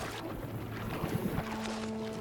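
River water splashing and churning as a bear plunges into a shallow, fast-flowing stream after salmon, with sustained music notes held underneath.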